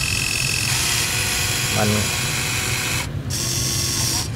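Electric motors and plastic gearboxes of a Huina 1580 RC toy excavator whirring steadily as the boom and bucket lift a scoop of dirt. A high whine in the whir stops about two-thirds of a second in, and the whir dips briefly near the end.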